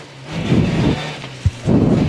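Citroen C2 rally car's engine running while the car drives across loose dirt off the road, with gravel and dirt rumbling and rattling against the underbody in two heavy surges and a sharp knock about halfway through.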